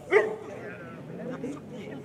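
A dog barking once, loud and short, just after the start, followed by low voices talking.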